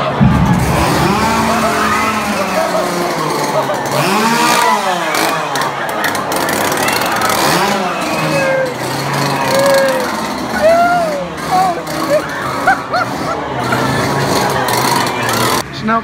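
A chainsaw engine running in a haunted-attraction tunnel, under a crowd of people shouting and screaming, with music in the background.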